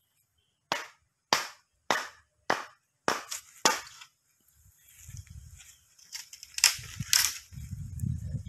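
Bamboo being chopped with a blade: seven sharp, cracking strikes, about one every 0.6 s, in the first four seconds. Then a low rumble follows, with two more strikes near the end.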